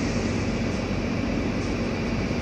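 Steady rumble and hiss of vehicle traffic, with a low engine hum underneath.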